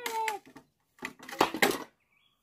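Pallet buster prying a deck board off a wooden pallet: a short squeal at the start, then the wood cracks sharply, loudest about a second and a half in.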